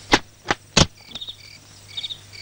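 Three sharp knocks on a wooden door in quick succession, about a third of a second apart, followed by crickets chirping.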